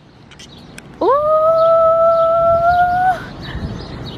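A person's long, drawn-out "ooooh" of admiration: the voice slides quickly up in pitch about a second in, then holds one high note for about two seconds before trailing off.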